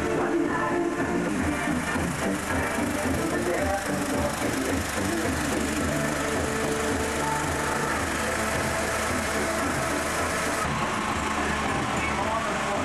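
Music played through a carnival float's horn loudspeaker, over a steady low engine rumble.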